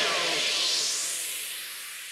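A hiss of noise that fades away steadily, left over right after the track's beat cuts off.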